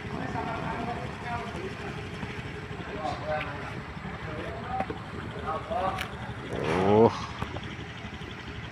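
Quiet background voices talking, with one louder voice rising in pitch near the end, over a steady low rumble.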